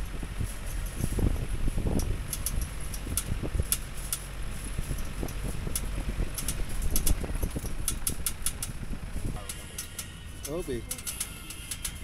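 Vehicle driving over a rough dirt track: a steady low rumble of engine and road, broken by frequent knocks and rattles from the bumps. It eases off about nine and a half seconds in, when a voice and what may be music come in.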